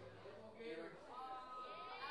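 Faint voices of people talking, one of them drawn out on a steady high note in the second half.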